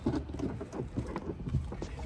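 Irregular light knocks and rustling as hands handle the carpeted boot floor and trim of an SUV's load area, searching for the jack stowed underneath.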